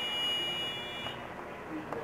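A steady high-pitched electronic beep that cuts off about a second in, followed by a couple of faint clicks near the end.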